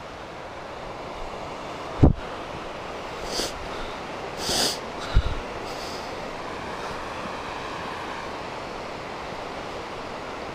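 Walking on a dirt forest trail: a steady rushing outdoor noise throughout, with a sharp low thump about two seconds in, another about five seconds in, and a few short scuffing sounds in between.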